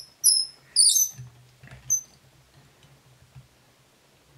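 Fly-tying bobbin squeaking as thread is drawn off it during wrapping: three or four short, high-pitched squeaks in the first two seconds.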